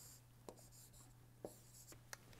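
Near silence: a stylus writing on a tablet, with two faint taps about a second apart over a low steady hum.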